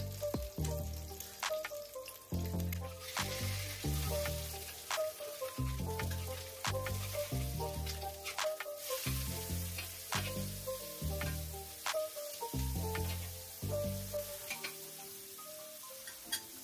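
An egg frying in plenty of ghee on an iron tawa, sizzling steadily as it is turned with a metal spatula. Background music with a steady beat plays throughout.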